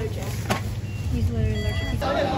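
A short high electronic beep near the end from a shop checkout, over voices and a low steady hum, with a sharp click about a quarter of the way in.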